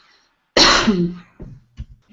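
A person coughs once, loudly, about half a second in, ending with a short voiced tail.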